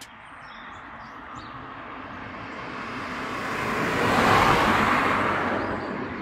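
A car passing on the road: tyre and road noise that swells steadily, is loudest about four and a half seconds in, then begins to fade.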